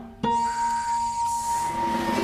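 Cartoon sound effect: a single held whistle-like tone with a hissing whoosh that swells near the end.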